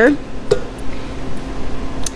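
Heat press clamped shut and timing a press: a low steady hum with a single sharp click about half a second in.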